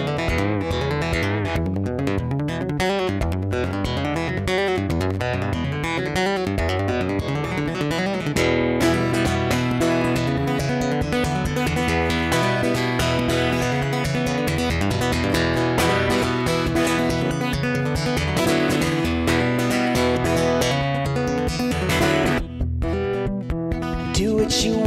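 Acoustic guitar played solo in an instrumental passage, the playing growing fuller about eight seconds in, with a brief drop in level near the end.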